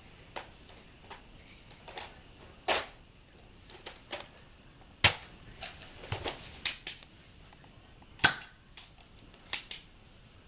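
Nerf foam-dart blasters handled and fired: a run of sharp plastic clicks and snaps at irregular intervals, the loudest about five and eight seconds in.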